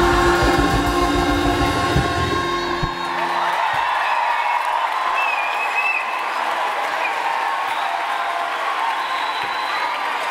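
A massed choir and orchestra end a piece on a held final chord with drum beats, stopping about three seconds in. A large audience then applauds and cheers, with a high wavering whistle about five seconds in.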